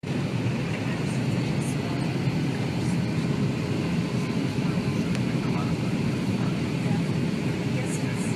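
Steady airliner cabin noise heard from a window seat: a low engine and airflow rumble with a faint steady hum.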